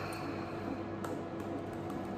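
A steady low electrical or mechanical hum of several fixed tones, with a few faint clicks about a second in and near the end.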